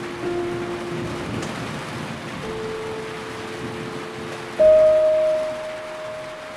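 Steady rain falling, under slow instrumental music of long held notes. A louder, higher note comes in about four and a half seconds in.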